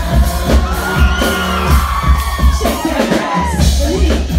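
Loud live music through a club sound system with a heavy bass beat, and long high screams and whoops from the audience riding over it from about a second in until near the end.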